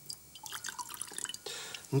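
A drink being poured from a glass carafe into a glass: irregular small splashes and ticks lasting about a second and a half.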